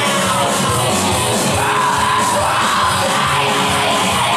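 Loud live industrial rock band playing, with the singer yelling into the microphone and holding one yelled note through the middle.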